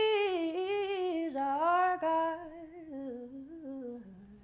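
A woman singing unaccompanied, drawing out the last words of a gospel worship line in a long, ornamented run that falls in pitch and grows softer toward the end.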